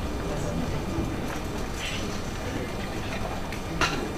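Auditorium room tone between pieces: a steady low rumble with faint audience murmur and rustling, and a single sharp knock near the end.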